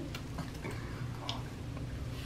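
A low, steady room hum with a few faint, scattered clicks.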